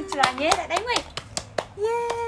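A run of about eight sharp, irregularly spaced taps or claps, with a voice talking over them.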